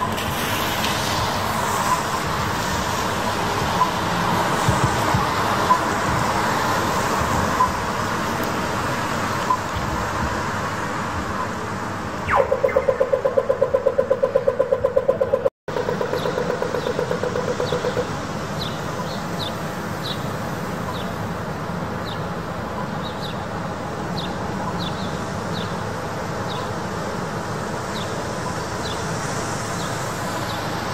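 City street noise on wet roads: traffic and tyre hiss. About twelve seconds in, a pedestrian crossing signal starts a rapid electronic ticking, about eight a second, for some five seconds. After it, faint short high chirps come through now and then.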